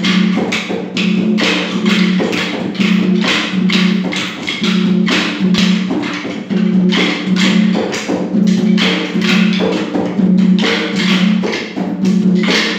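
Maculelê music: wooden sticks struck together in a fast, steady rhythm over drumming.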